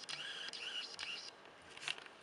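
Camera lens motor whirring for about a second and a half as the lens zooms and refocuses, picked up by the camera's own microphone. A short sharp click follows near the end.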